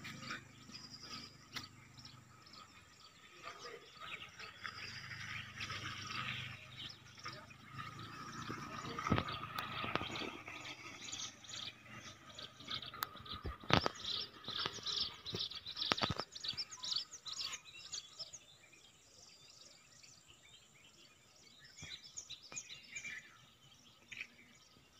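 Birds chirping on and off over faint outdoor ambience, the chirps busiest in the middle and again near the end. A few sharp clicks stand out above them.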